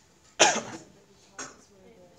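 A person coughing: one loud, abrupt cough about half a second in, then a shorter, fainter one about a second later.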